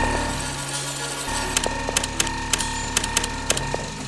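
Sound-design soundtrack: a steady low synth drone with held tones over it. About a second and a half in, a quick run of around a dozen sharp mechanical clicks plays over it for about two seconds.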